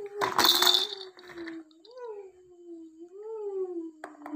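A baby vocalizing in one long unbroken hum, its pitch rising and falling gently a few times, while being spoon-fed. A loud clatter sounds about half a second in.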